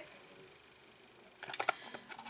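Near-silent room tone, then about a second and a half in a few quick clicks and light rustles: a cardboard packet being turned over in the hands, with fingernails tapping its sides.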